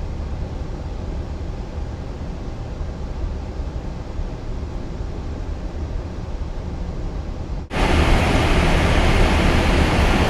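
Steady background noise inside the cockpit of a parked Boeing 777-300ER: an even rush of air over a low hum. About three-quarters of the way through, it cuts off abruptly and turns into a louder, brighter hiss.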